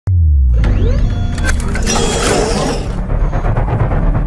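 Electronic intro sound design: a deep bass hit with a falling tone right at the start, then rising electronic sweeps and sharp clicks, and a whoosh about two seconds in, all over a steady low rumble.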